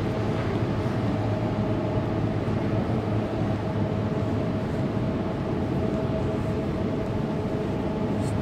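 Steady hum of an SBB double-deck electric train, a constant mid-pitched tone over a low drone.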